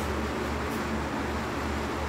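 Steady rushing air with a low hum from a spray booth's ventilation fan running.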